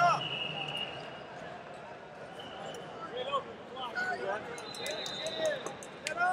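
Wrestling shoes squeaking and bodies thudding on the mat during a heavyweight scramble and takedown, with short squeaks and a run of sharp knocks near the end, over arena hubbub and voices.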